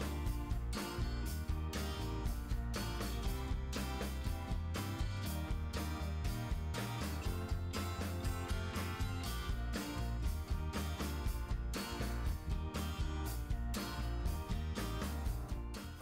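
Background music with a steady beat, laid over the video.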